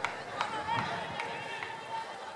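Distant voices of people at an athletics track during a running race, with a couple of sharp clicks near the start.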